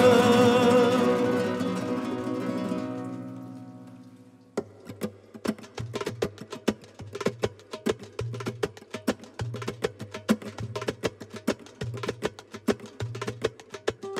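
A sustained ensemble chord fades out over about four seconds. Then, after a short gap, a darbuka starts a rumba rhythm with sharp, rapid finger taps over deep bass strokes about once a second.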